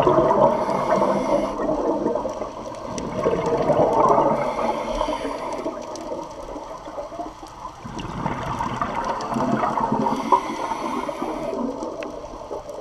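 Scuba regulator exhaust bubbles gurgling underwater, heard close to the camera, swelling and fading about three times as the diver breathes out.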